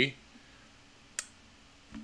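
A single sharp click at the computer about a second in, over quiet room tone.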